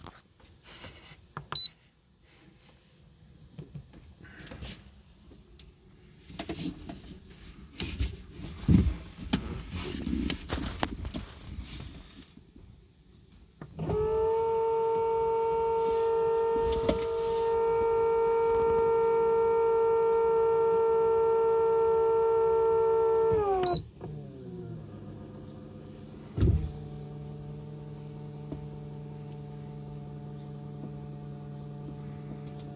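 Electric autopilot hydraulic pump motor running with a loud, steady whine for about ten seconds as it drives the rudder hard over, then dropping in pitch and stopping. It then runs on more quietly at a lower pitch, on only about 4 volts, as it tries to drive the rudder back; it is stuck in reverse and fails to return the rudder to centre.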